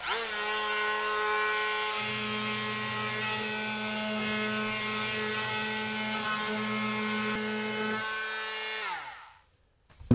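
Electric oscillating multi-tool fitted with a triangular sanding pad: the motor spins up to a steady high buzz, and a deeper buzz joins about two seconds in as the pad is pressed to the wood to sand it. Near the end it is switched off and winds down, its pitch falling away.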